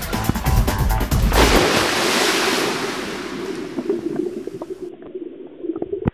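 Background music with a beat that stops about a second and a half in. A rush of water splashing into a swimming pool takes over, loud at first and fading toward the end.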